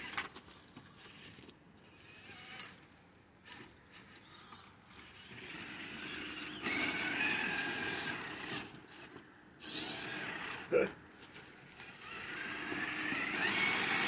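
Electric motors and gearing of radio-controlled rock crawlers whining as they crawl, the pitch drifting with the throttle. The whine rises in pitch near the end as one speeds up.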